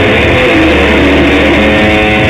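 Electric guitar played loudly through an amplifier, rock-style, with held notes ringing over a sustained low note.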